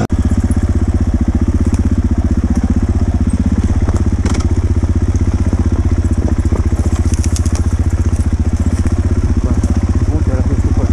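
Enduro motorcycle engine running at a steady low speed, its exhaust pulsing evenly at one unchanging pitch, with a few faint clicks over it.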